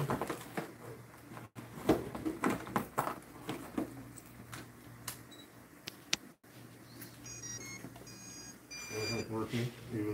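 Low talk and handling knocks, followed about seven seconds in by a short run of high electronic beeps at several pitches.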